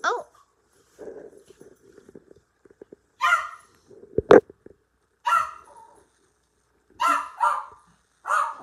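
A dog barking, about five short barks spaced irregularly over several seconds. A single sharp click sounds a little past the middle.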